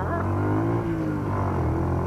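Kawasaki Bajaj CT100's single-cylinder four-stroke engine running under way, its note rising a little and then easing off about a second in.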